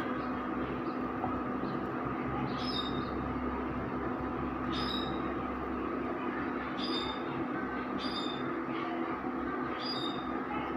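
Induction cooktop running at a steady hum and hiss under a pan of cooking dosa batter, with short high chirps recurring about every one to two seconds.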